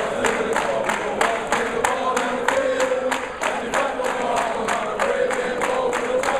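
A large group singing together in chorus while clapping their hands in a steady beat, about three claps a second.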